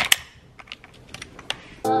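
Steel ratcheting combination wrenches clinking against each other and their rack as one is picked out: a handful of sharp, irregular metal clicks. Music with a beat starts near the end.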